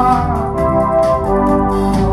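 Live band music: held keyboard chords over a steady bass, heard through an audience recording.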